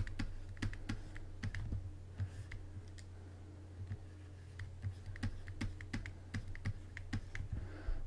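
Light, irregular clicks and taps of a stylus writing on a tablet, over a steady low electrical hum.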